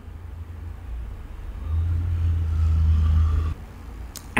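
A low rumble, louder from about a second and a half in, that cuts off suddenly shortly before the end.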